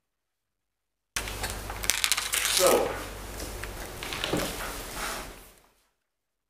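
Handling sounds at a lectern: clicks and light rattling as papers and a laptop are handled. They start suddenly about a second in after dead silence and fade out near the end.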